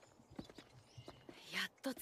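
Faint, irregular clip-clop of hooves, a few knocks spread unevenly, with a short stretch of voice near the end.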